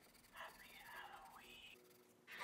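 Near silence with a faint whisper-like voice sound starting about half a second in, its pitch sweeping down and back up before it fades.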